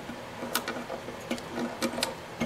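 A few light clicks as a fiddle's wooden tuning peg is turned by hand in the peg box, winding the E string onto it.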